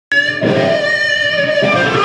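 Electric guitar playing held notes that change twice, starting abruptly right at the beginning.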